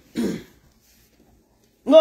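A woman clears her throat once, briefly. After a silent pause, near the end she starts a loud, long-drawn "No".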